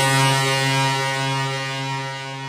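A single low, buzzy synthesizer note from a Brazilian funk montagem, held with no beat and slowly fading out as the track ends.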